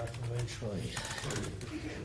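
Indistinct speech from a person's voice over a steady low room hum, with a few faint ticks.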